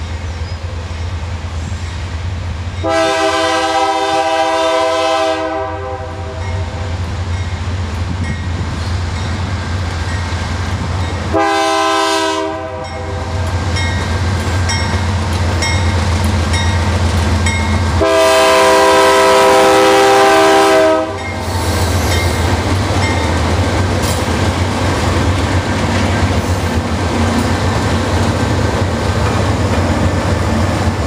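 Diesel freight locomotives working up a grade, their engines a steady low drone. The lead locomotive's multi-note air horn sounds three times: a long blast a few seconds in, a shorter one near the middle and another long one about two-thirds through. In the last part the locomotives rumble past close by.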